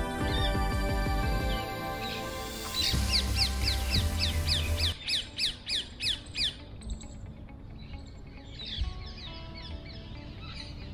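Background music with a steady bass line stops about halfway through. Over it, and on after it, a bird gives a quick series of short falling calls, about three a second, which die away into fainter scattered calls.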